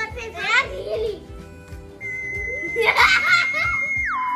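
Children giggling and babbling over background music. About halfway through, a steady high electronic beep comes in and holds, with a burst of laughter over it.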